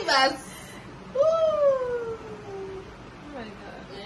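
A woman's short laugh, then one long, high-pitched vocal sound from her that rises briefly and then slides slowly down in pitch.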